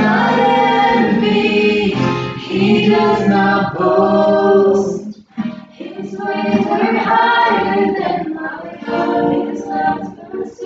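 A small group of mostly female voices singing a worship song together, with a brief break about five seconds in.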